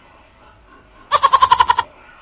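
A single bleat about a second in: a quavering call of under a second, held on one pitch and broken into about a dozen fast, even pulses.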